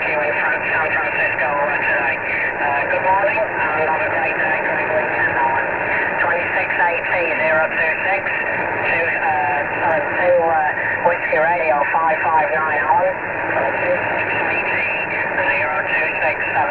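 A distant station's voice coming in over 11-metre CB radio on a long-distance contact, heard through a Cobra 148 CB radio's speaker. The voice sounds thin and narrow and is hard to make out over a steady hiss of band noise.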